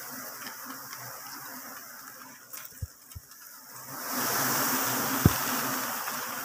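A colony of giant honeybees (Apis dorsata) buzzing around their exposed comb, the sound swelling into a louder, even hiss about four seconds in. A few dull thumps sound in the middle and near the end.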